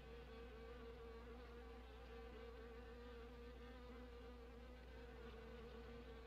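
Faint, steady insect buzzing, a wavering drone that holds through the whole stretch, on an old film soundtrack.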